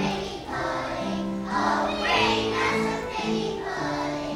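A choir of kindergarten children singing together over an instrumental accompaniment.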